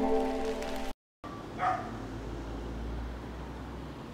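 Plucked-string intro music fading out, a brief dropout to silence, then outdoor background noise with a low steady rumble and one short pitched call about a second and a half in.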